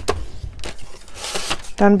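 Sharp clicks from the scoring blade carriage of a paper trimmer on its rail, then a short rustle of cardstock being slid off the trimmer.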